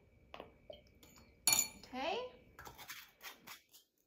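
A spoon clinking against a bowl while sauce ingredients are measured in: a few light taps, a sharper knock about one and a half seconds in, then a quick run of light clinks near the end.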